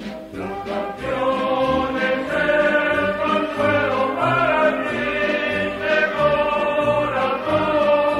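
A choir singing in held notes with band accompaniment; after a brief dip at the start, a new phrase comes in about a second in.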